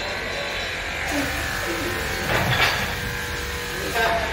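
A steady low buzzing hum, with faint voices in the background and a brief rustle about two and a half seconds in.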